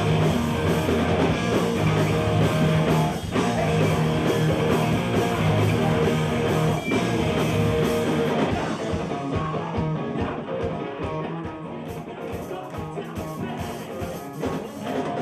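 Loud live hardcore/noise rock band: distorted electric guitars, bass and drums with shouted vocals. About eight seconds in, the dense wall of sound thins out into a sparser, choppier passage.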